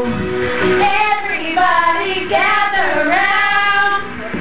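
Teenage girls singing a pop song together into handheld microphones, with long held notes that bend in pitch, one dipping and rising again about three seconds in.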